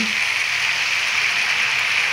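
Shredded cabbage and vegetable stuffing sizzling steadily as it fries in an iron kadhai.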